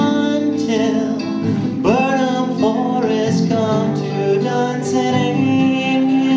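Live male vocal with acoustic guitar accompaniment, singing without clear words, with an upward swoop in the voice's pitch about two seconds in.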